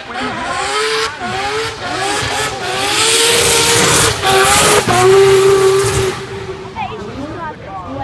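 Race car passing sideways on a wet track with its engine running hard. It builds to its loudest about three to six seconds in, then fades.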